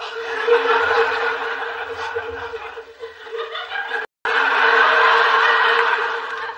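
Sitcom studio audience laughing at a joke. The wave of laughter eases off a little, cuts out for an instant about four seconds in, then comes back loud.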